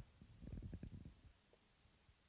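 Near silence, with a few faint low thuds and rumbles in the first second.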